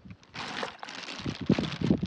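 Clear plastic bag crinkling and rustling as hands move the small tilapia inside it. A louder burst of crinkling comes about half a second in, then softer scattered crackles.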